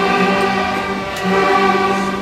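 School string orchestra of violins, violas and cellos playing long sustained chords, with a change of chord about a second in.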